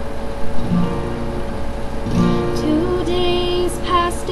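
Steel-string acoustic guitar played solo, opening the song with separate plucked notes that ring on. Near the end a young female voice starts singing over it.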